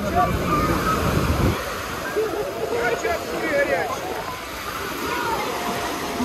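Small waves breaking and washing up on a sandy beach, a steady surf noise, with the voices of many beachgoers talking around it.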